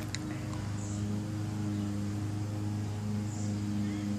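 A steady low machine hum with several evenly spaced overtones, unchanging throughout, with a faint tick just after the start.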